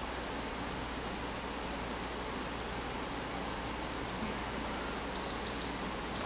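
Steady hum of room ventilation from an air conditioner and fan. Near the end comes a short run of high beeps from a workout interval timer.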